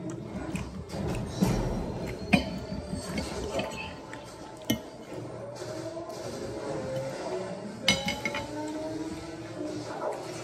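Metal cutlery clinking against ceramic dinner plates as a fork cuts into steak and scoops egg, with sharp clinks about two and a half seconds in, near five seconds and near eight seconds.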